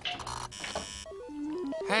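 Synthesized electronic bleeps, a quick string of short tones hopping up and down between set pitches, starting about halfway through: a cartoon robot sound effect.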